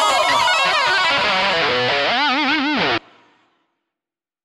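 Distorted electric guitar lead playing alone after the band drops out, running down through fast phrases and ending on a wide, wavering vibrato. The music then cuts off abruptly about three seconds in.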